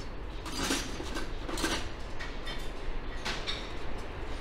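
A fluted metal tray being handled and turned over, giving a few light metallic clinks and knocks.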